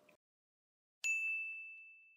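A single bright, high-pitched ding about a second in, a bell-like chime sound effect that rings on and fades away over about a second and a half. Before it the sound track has cut to silence.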